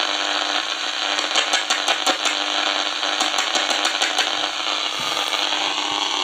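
Knife tapping and scraping on the electret microphone of a home-made walnut-shell radio transmitter, heard through a portable AM radio receiver as loud hissing, crackling noise with many quick clicks over a steady low hum.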